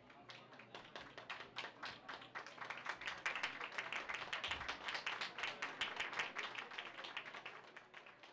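Audience applauding, the hand claps building up over the first few seconds and thinning out near the end.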